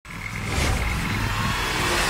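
Intro sound effect: a rumbling, hissing whoosh that swells steadily in loudness, with a thin high tone in the first second, building up toward electronic music.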